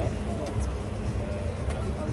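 Busy outdoor city ambience: a steady low rumble with faint voices in the distance, and two faint clicks, one about half a second in and one near the end.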